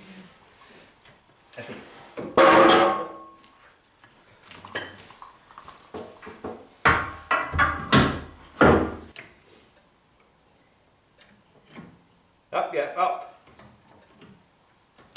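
Metallic clanks and knocks from a hydraulic trolley jack and a steel rail tube as the bowed tube is jacked up to straighten it. There is a loud ringing clank about two and a half seconds in, then three heavy knocks a little under a second apart between about seven and nine seconds.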